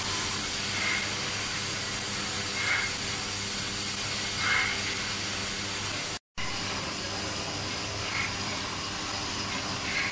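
Oxy-fuel cutting torch hissing steadily as its flame cuts through steel plate. The sound breaks off for a moment a little past the middle, then the same steady hiss resumes.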